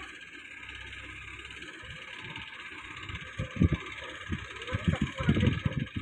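Hydra pick-and-carry crane's diesel engine running steadily while the crane holds a suspended load, with irregular low thumps that start about halfway in and come more often toward the end.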